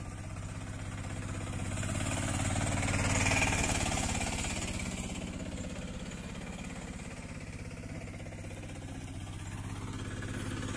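Bajaj auto-rickshaw's single-cylinder engine running at low speed as the three-wheeler circles over harvested moong plants to thresh them. It grows louder as it comes close about three seconds in, then fades as it moves away.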